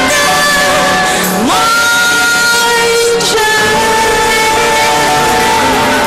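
Female singer with a live band holding long sung notes over the backing: she slides up into a high sustained note about a second and a half in, then drops to a lower note that she holds nearly to the end.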